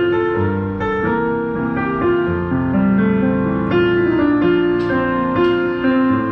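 Roland HP205 digital piano being played with both hands: held chords that change every second or so, under a melody line.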